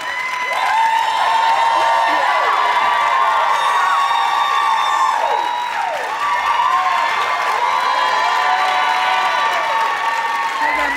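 Studio audience cheering, with many high-pitched screams over clapping; it swells in the first second and stays loud.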